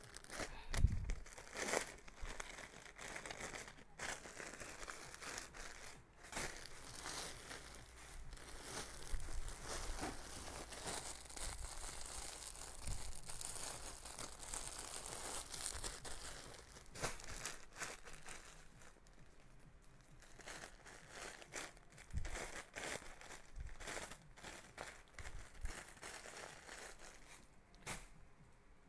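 Plastic packaging crinkling and rustling as a garment is handled and unwrapped: irregular crackles, busy at first and thinning to scattered ones in the last third.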